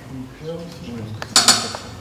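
Two sharp clinks in quick succession a little over a second in, over faint low talk.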